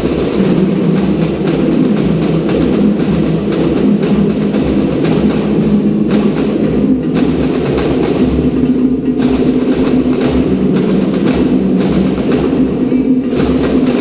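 Live band music with a steady drumbeat, played loud and continuous for a drill team's routine.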